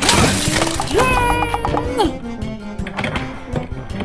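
A red plastic toy fire truck cracking and shattering under a car tyre, a sudden crash right at the start, over background music with a cartoonish voice-like sound about a second in.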